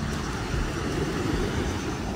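Ocean surf breaking on a sandy beach, a steady rushing noise.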